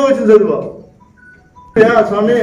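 A man speaking Telugu, pausing for about a second. During the pause a few faint, short, high electronic tones sound, then the speech resumes.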